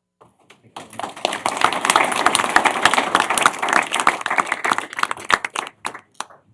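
A roomful of people applauding, starting about a second in and dying away near the end.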